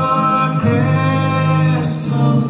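Live Irish folk band playing a slow ballad: acoustic guitar under held, sustained sung or played notes, the chord changing about half a second in and again near the end.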